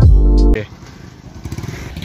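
Background music that cuts off suddenly about half a second in, followed by a motorcycle engine running steadily at low speed, with rough, rapid pulsing from its firing.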